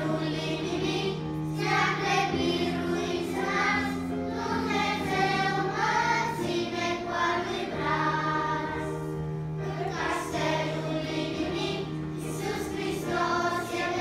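Children's choir singing a Romanian hymn, with held low accompaniment notes that move in steps beneath the voices.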